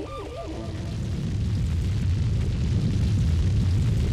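Deep rumble of a fire sound effect, growing steadily louder.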